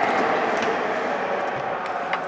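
Spectators' shouting and hubbub echoing in an indoor sports hall, slowly dying down, with a single sharp knock near the end.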